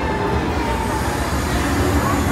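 Hogwarts Express steam-locomotive replica standing at the platform with its steam effect venting: a steady low rumble under a continuous hiss.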